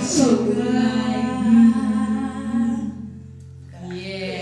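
A woman sings one long held final note over a sustained acoustic guitar chord, the song's last note, fading out about three seconds in.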